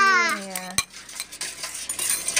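A coil whisk stirs a runny coconut-milk and egg mixture in a metal pot, its wire clicking lightly against the pan. A high voice says "ya" at the start, over the stirring.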